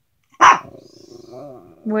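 A Pomeranian gives one sharp bark about half a second in, then about a second of low growling.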